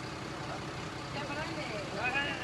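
Refuse lorry engine running steadily, with a voice faintly heard about a second in.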